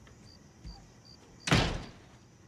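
A front door is shut with a slam about one and a half seconds in, a single sharp hit that is the loudest sound here, after a soft thud a second earlier.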